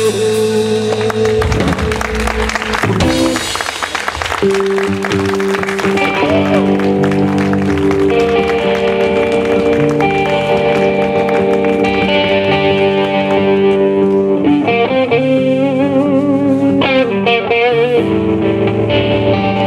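Live blues-rock band playing an instrumental passage on electric guitar, bass guitar and drum kit. Busy drumming with cymbals for the first four seconds gives way to long held electric guitar notes, which waver in pitch near the end.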